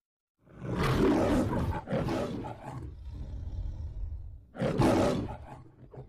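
The Metro-Goldwyn-Mayer studio logo's lion roar. There are two roars back to back, then a low rumbling breath, then a third roar near the end that fades out.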